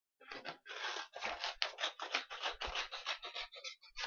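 Scissors cutting through a sheet of construction paper in a quick run of crisp snips, about five a second, growing weaker near the end.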